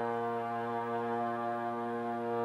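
Live indie band music: a slow, sustained chord held over a low bass note, with no change in the chord.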